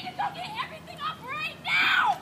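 Indistinct high-pitched shouting voices, with one loud shout near the end.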